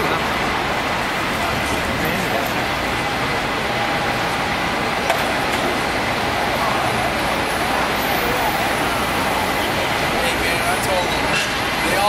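San Francisco cable car rolling along its street track toward and past, amid steady city traffic noise. Faint voices mix in.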